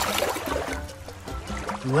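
A short splash of a hand dipping a small plastic toy into shallow water, strongest at the start and fading within about a second, over background music with a steady beat.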